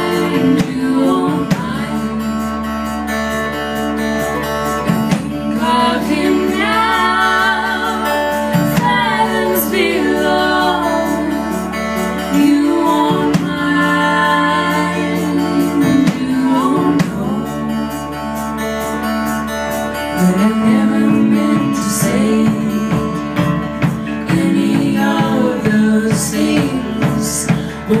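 Live folk song: female voices singing in close harmony over electric guitar and keyboard, recorded on a phone's microphone in the audience.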